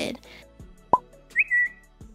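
Cartoon-style pop-up sound effects for an animated like-button graphic: a quick upward-sweeping pop about a second in, then a short whistle-like chirp, over soft background music.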